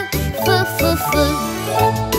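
Children's song backing music: a melody of short pitched notes over a steady low beat.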